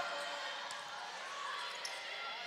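Murmur of a gymnasium crowd, with a volleyball struck faintly twice as a rally starts.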